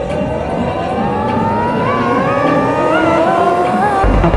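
Electronic trance music in a build-up: a synth sweep rising steadily in pitch with a wavering wobble, the kick drum and bass dropped out, until the heavy kick and bass come back in at the end.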